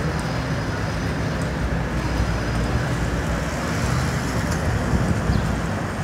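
Steady city street traffic noise: a low rumble of vehicle engines and tyres passing on the road.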